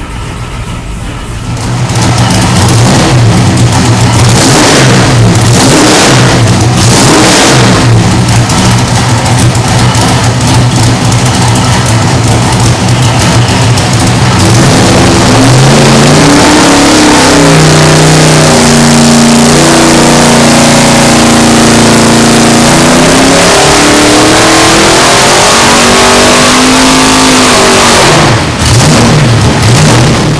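A 665-cubic-inch big-block V8 running very loud on an engine dyno through open headers. It runs at a steady low speed with a few quick throttle blips, then climbs in revs about halfway through and holds there, falls back, and cuts off near the end.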